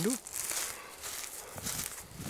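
Footsteps through dry leaves and grass, with wind rumbling on the microphone in the second half.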